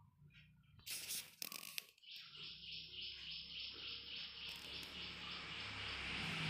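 Paper question-booklet pages being turned, a short rustle about a second in. Then a rapid, steadily pulsing high-pitched chirring starts about two seconds in and carries on over a low hum.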